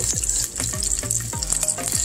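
Fried chicken wings sizzling and crackling in a hot pot on the fire, with background music playing over it.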